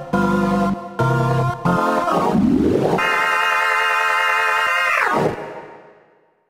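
Studiologic Sledge synthesiser playing a dirty Hammond B3-style organ patch with drive, added pink noise and fast Leslie-style chorus. Short chords, then a glide up into a chord held for about two seconds, a quick glide down, and a fade-out.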